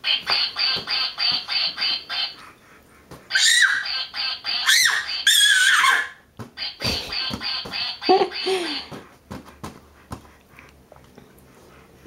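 Inflatable duck bathtub's built-in quacker sounding a rapid string of quacks, about four a second, for the first two seconds and again about seven seconds in. Between the two runs a baby squeals in loud, high, gliding cries.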